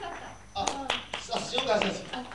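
Audience applause dying away into a few scattered claps, then a man's voice starting to speak near the end.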